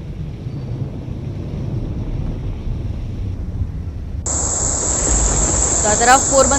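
Outdoor sound of a rain-flooded street: a low rumble of wind on the microphone and passing traffic. About four seconds in, a steady high-pitched chirring of crickets starts abruptly.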